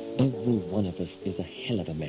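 A voice-like pitched sound sliding quickly down and up in pitch about four times a second, over soft music.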